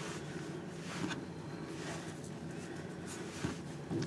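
Faint rustles and light handling noises of macrame cord being pulled tight into a square knot on a tabletop, a few soft brief touches over a steady low room hum.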